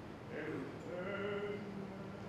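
An opera singer's voice singing a short phrase: a note that slides downward, then a held note.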